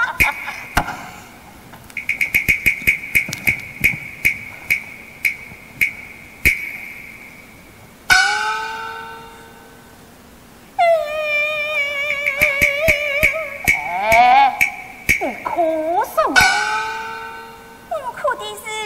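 Chinese opera stage accompaniment: a quick run of sharp percussion strikes with a ringing tone, then long held, wavering pitched tones that start suddenly three times.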